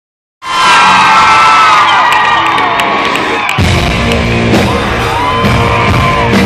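A crowd screaming and whooping at a loud live rock concert. About three and a half seconds in, the band comes in with drums and electric guitar, and the screaming carries on over the music.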